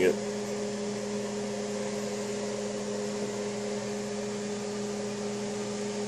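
Steady background machine hum, like a running fan or appliance, with a low tone and a higher tone above it at an even level.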